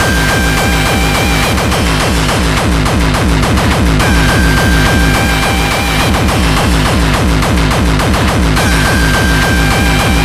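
Hardcore techno with a fast, steady kick drum throughout. A high held synth note comes in and drops out every few seconds.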